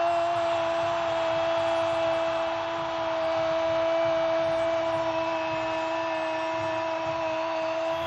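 A football commentator's long drawn-out goal cry, one held note lasting about eight seconds, over steady stadium crowd noise. It breaks off near the end.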